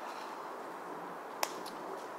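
Steady open-air background hiss, with one sharp click about a second and a half in and a fainter click just after it.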